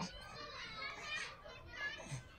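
A baby's high-pitched babbling and cooing sounds, mixed with voices talking to it, with a short knock right at the start.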